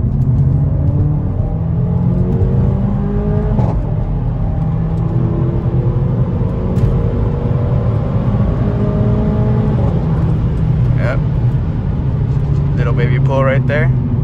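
Mercedes-AMG CLA45's turbocharged four-cylinder pulling at full throttle, heard from inside the cabin: the engine note climbs steadily, drops sharply about four seconds in as the automatic gearbox upshifts on its own, then climbs again.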